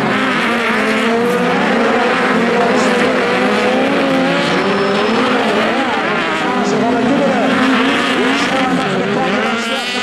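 Several VW Beetle-based autocross cars racing on dirt, their air-cooled flat-four engines revving up and down at different pitches, overlapping as they go round the track.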